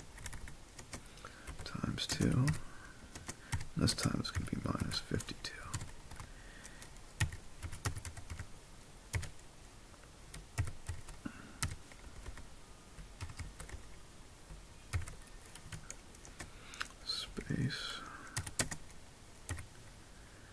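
Typing on a computer keyboard: irregular runs of key clicks throughout, with brief murmurs of a voice a couple of times.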